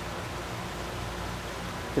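Steady background hiss with a low, even hum underneath, with no distinct knocks or other events.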